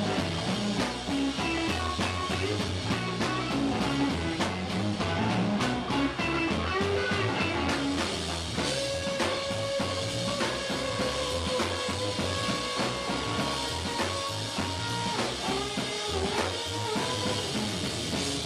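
Live rock band playing electric guitar over a drum kit, with a melodic guitar line and a held note around the middle.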